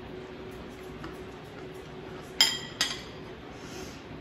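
A metal fork clinking twice against a ceramic plate, two short ringing clinks under half a second apart about two and a half seconds in.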